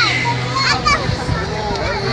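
Hubbub of a large crowd walking: many overlapping voices talking and calling out, some high-pitched voices standing out, over a low steady hum.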